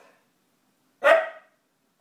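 Siberian husky giving one loud, short bark about a second in.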